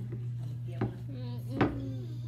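Two knocks of a plate set down on a wooden table, the second louder, over a steady low hum.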